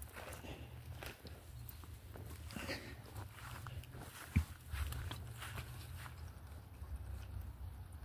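Faint footsteps on grass and stone with light handling knocks, over a steady low rumble on the microphone.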